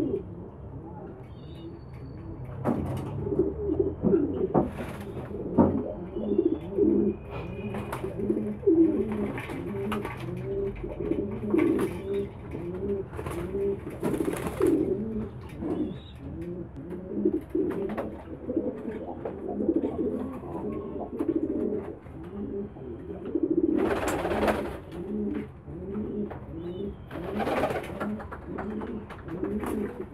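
A flock of domestic pigeons cooing continuously, many overlapping coos. Now and then there are bursts of splashing and wing-flapping as the pigeons bathe in a shallow water basin, loudest twice near the end.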